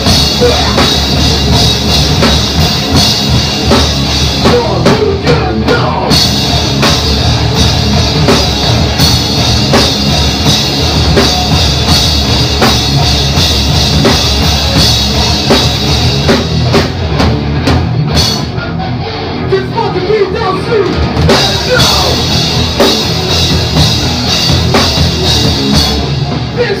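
Live rock band playing loud on electric guitar, bass guitar and drum kit. The top end thins out for a few seconds about eighteen seconds in, then the full band comes back.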